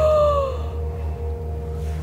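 A person's long, high gasped "ooh" that glides slightly and breaks off about half a second in, over steady, droning dark ambient background music.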